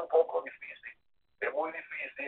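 Speech only: a voice talking over a narrow-sounding telephone line, with a short pause about a second in.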